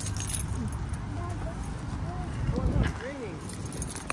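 Faint voices over a steady low rumble.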